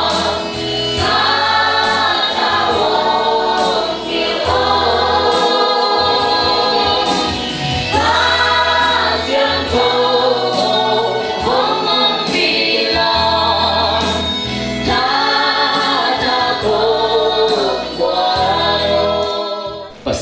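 A choir singing a gospel hymn in phrases over held low bass notes and a steady beat. The music stops abruptly at the end.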